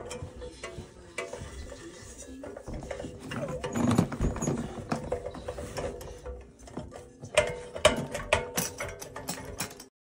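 Light clicks and rattles of a black metal plant stand being handled, louder in a brief scrape about four seconds in and in a run of sharp clicks near the end, with music playing underneath.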